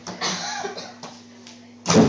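A brief vocal sound in the first second, then a sudden loud bang near the end as a boy leaps and dunks on a small wall-mounted basketball hoop.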